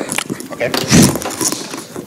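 Handling noise of a freshly swapped microphone being fitted and adjusted: clicks and rustling right against the mic, with a man saying "okay" briefly.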